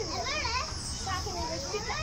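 Young children's voices calling and chattering while playing, high-pitched and wavering.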